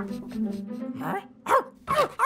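A cartoon puppy's short, high yips, three in quick succession in the second half, over soft background music.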